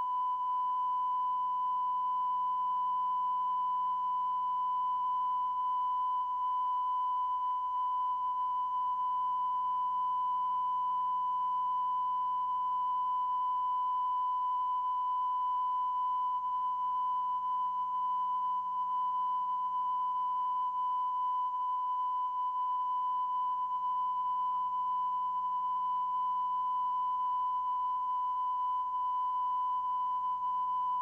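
A steady electronic sine tone at about 1 kHz, the standard test tone, held unbroken at one pitch.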